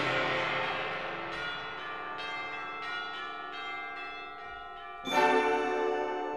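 Orchestral music imitating pealing church bells: ringing bell strokes follow one another over a held chord. A loud full-orchestra chord breaks in about five seconds in.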